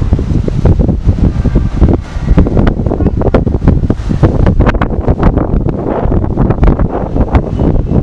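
Wind buffeting the microphone: a loud, irregular rumble with crackles that keeps rising and falling.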